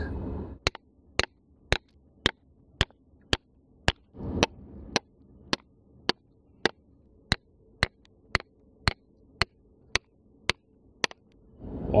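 A hammer striking a chisel into a seam of pyrrhotite rock to break off specimen chunks, with sharp, evenly spaced strikes about two a second.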